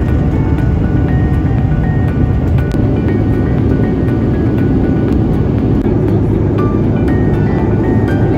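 Uplifting corporate-style background music track, with steady notes that change about every half second over a full, heavy low end.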